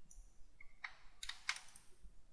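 Three or four faint computer keyboard keystrokes in quick succession, starting about a second in.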